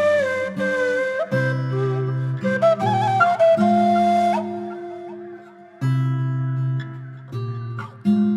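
Ney, the end-blown reed flute, playing a slow, breathy melody over sustained low backing chords. The flute phrase fades out about five seconds in, and the backing moves to a new chord.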